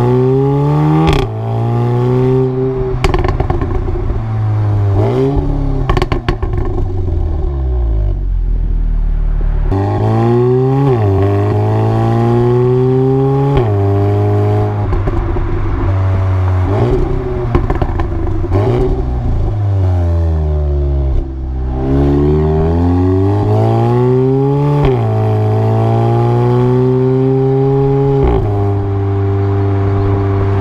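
Exhaust of an Audi S3 8V facelift's turbocharged 2.0-litre four-cylinder with the resonators deleted, heard right at the rear bumper. The revs climb under acceleration and fall sharply at each gear change, over and over. Several sharp pops and bangs come in the first ten seconds.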